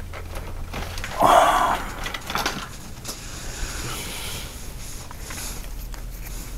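Handling sounds at a drawing board: a plastic ruler and pencil being picked up and laid on the paper, with light knocks and rubbing. One brief louder sound about a second in.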